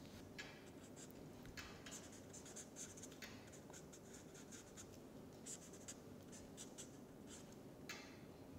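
Faint, irregular short strokes of a felt-tip marker writing and drawing on paper.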